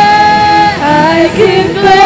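Female-led worship singing with a band: a long held note ends about 0.8 s in and the voices move on to the next line.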